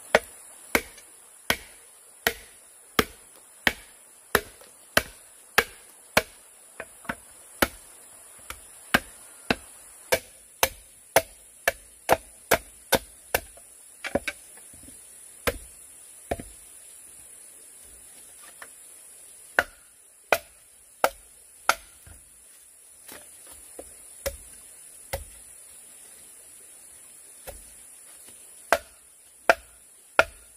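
Machete chopping and splitting a green bamboo tube: sharp strikes about one and a half a second, a pause of a few seconds past the middle, then slower, sparser strikes. Insects buzz steadily at a high pitch behind.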